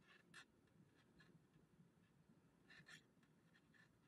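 Near silence with faint scratchy rustles of a crochet hook pulling grey yarn through stitches: two close together near the start and two more about three seconds in.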